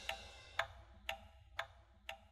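Clockwork ticking at a steady two ticks a second, each tick a short, faint metallic click with a slight ring.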